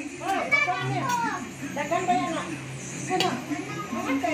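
Indistinct chatter of several voices around a dinner table, including high-pitched children's voices. A sharp click of dishware comes a little after three seconds, over a steady low hum.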